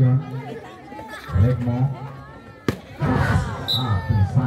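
Players and onlookers calling out during a plastic-ball volleyball rally. A single sharp smack of the ball being struck comes about two and a half seconds in, then a short blip of the referee's whistle near the end.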